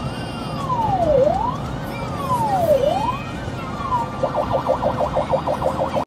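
Ambulance siren heard from inside the cab while responding. It runs a slow wail that rises quickly and falls slowly, about every second and a half, then switches about four seconds in to a rapid yelp of roughly eight cycles a second. Road and engine rumble runs low underneath.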